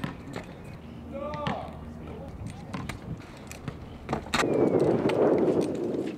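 Freestyle scooter on a concrete ledge: scattered clicks and knocks from the deck and wheels, with a short shout about a second and a half in. From about four seconds in, a louder rolling rumble of the hard wheels on rough concrete as the rider rolls in, cutting off near the end as he leaves the ground for the trick.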